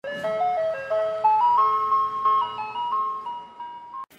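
Short channel-intro jingle: a simple melody of single notes stepping upward and then hovering, over a held lower note that drops out near the end. It starts suddenly and cuts off just before the end.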